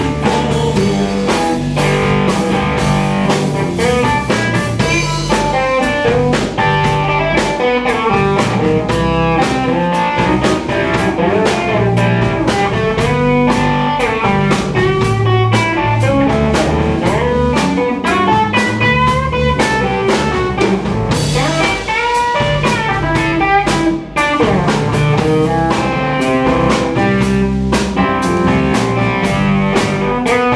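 Live blues band playing an instrumental passage: electric guitar playing lead lines with bent notes over electric bass and a drum kit keeping a steady beat.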